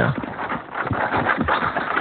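Several people running on a dirt track: irregular footfalls, with knocks and clatter from the beer crate of bottles they carry.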